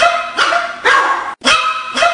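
A chihuahua barking in a quick run of high-pitched yaps, about two a second.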